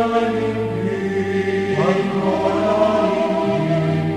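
Religious chanting or choral singing in long held notes that step from one pitch to the next.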